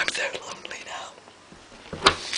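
Quiet whispered speech during the first second, trailing off into low room noise.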